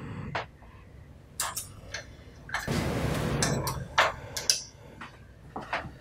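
Orange shipping tape being peeled off a large-format inkjet printer's plastic housing, a rustling tear for about a second in the middle, among a dozen or so light clicks and taps of hands on the plastic parts.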